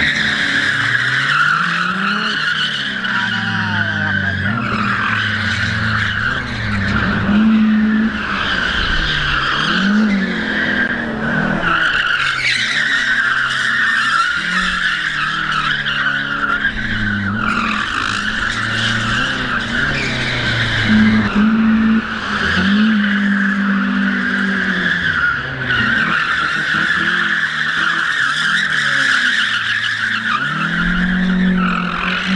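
Chevrolet Omega Suprema station wagon with a naturally aspirated four-cylinder engine drifting: the engine revs up and falls back again and again while the rear tyres squeal without a break.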